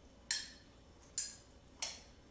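A spoon clinking against the inside of a mug three times while stirring macaroni, milk, grated cheese and cornstarch together, short sharp clicks less than a second apart.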